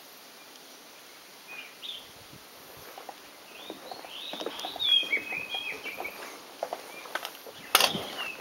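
Birds chirping outdoors in a short burst of quick, curving calls through the middle, over a steady outdoor background. Scattered light knocks throughout, and one sharp click near the end.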